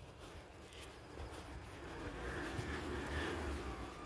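Faint, distant engine rumble that slowly swells from about a second in, with a thin high whine near the end.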